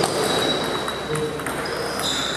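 Table tennis ball in a rally, a run of sharp clicks as it is hit by rubber paddles and bounces on the table, with a faint ringing ping.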